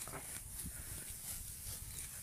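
Faint outdoor background noise with a low rumble and a few soft ticks; no distinct sound stands out.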